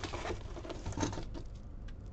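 Small plastic zip bags of resin diamond-painting drills being handled, the loose drills pattering and shifting inside with light crinkling of the plastic, in a run of quick irregular ticks with one slightly louder click about a second in.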